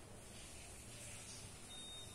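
Quiet room tone, with a faint, thin high-pitched steady beep starting near the end.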